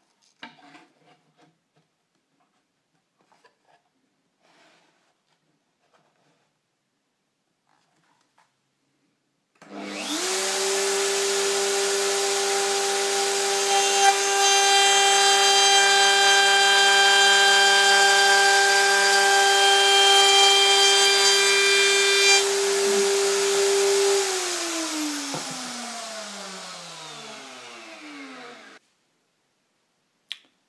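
Router mounted under a router table starts up about ten seconds in and runs at speed with a high steady whine, cutting into a small wooden block for several seconds. It is then switched off and its whine falls in pitch as it spins down to a stop near the end. Light handling clicks come before it starts.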